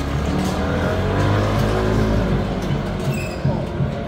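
A motor scooter passing close by, its engine note rising and then falling away over about two seconds, over a steady low hum.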